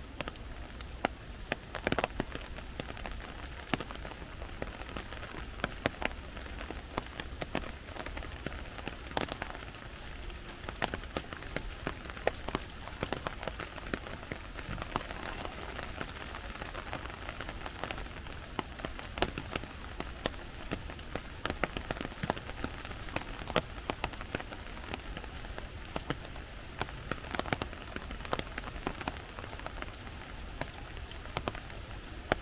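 Steady rain falling on forest foliage, with many irregular sharp raindrop hits close by.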